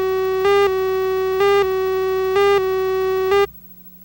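Videotape leader countdown tone: a steady buzzy tone with a slightly higher, louder beep about once a second as the slate counts down. It cuts off suddenly about three and a half seconds in, leaving only a faint hum.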